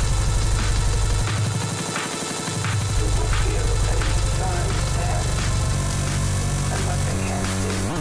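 Bass-heavy electronic dance music playing in a DJ mix, with a steady beat. The deep bass drops out for about a second and a half, starting about a second in, then comes back.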